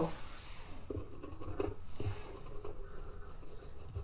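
A pen tip scratching into the wax layers of an encaustic painting board in short strokes, carving a line, pressed hard to cut it deeper.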